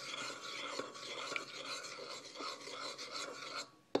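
Metal spoon stirring a homemade deodorant mixture in a ceramic bowl, scraping steadily against the bowl. The scraping stops shortly before the end, followed by a single click.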